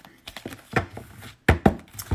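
Several light knocks of tarot cards being handled and set down on a table, the loudest two close together about a second and a half in.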